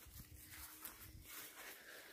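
Near silence: faint outdoor background with a low rumble.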